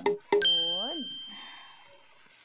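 A single bright metallic ding that rings and fades over about a second and a half, with a short tone underneath that rises and falls.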